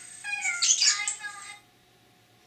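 Budgerigar chirping and warbling in quick notes that glide up and down. The sound stops abruptly about one and a half seconds in.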